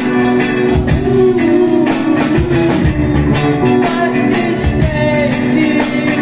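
Live rock band playing: electric guitar, bass guitar and drum kit, with a steady beat.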